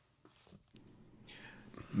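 A quiet pause with a few faint mouth clicks, then a man's soft breath in just before he starts speaking near the end.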